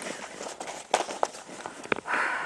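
Sheets of paper rustling and crackling as they are handled, close to a clip-on microphone, with a few sharp crackles about a second in and near the end.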